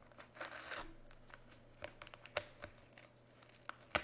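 A paper mailing envelope being torn open by hand: a longer tearing rasp about half a second in, then scattered short rips and crinkles, and a sharp snap near the end.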